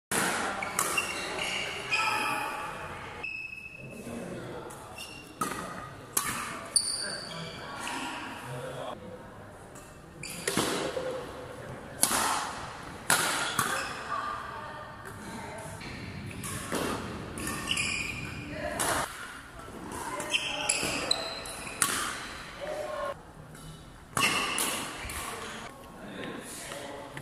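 Badminton rally: sharp racket strikes on the shuttlecock at irregular intervals, with short high squeaks and voices, echoing in a large indoor hall.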